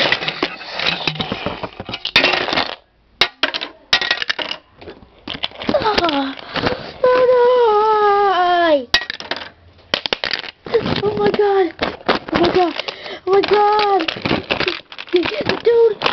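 Plastic LEGO bricks and figures clattering in a string of short noisy bursts, then a child's voice letting out long wailing cries that fall in pitch, about seven seconds in and again several times near the end.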